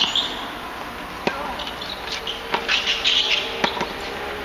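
Tennis ball struck by rackets and bouncing on a hard court during a rally: a few sharp knocks about a second apart, with high chirping in the background.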